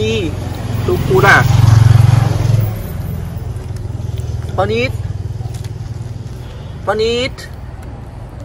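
A motor vehicle's engine runs with a steady low hum, swelling loudest for a couple of seconds about a second in. Three short, sharply rising voice calls sound over it, about a second, four and a half seconds and seven seconds in.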